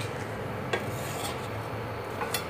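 A steel spoon rubbing and scraping lightly on a non-stick pan as a half-roasted paratha is lifted off, with one small click about a third of the way in, over a steady low hum.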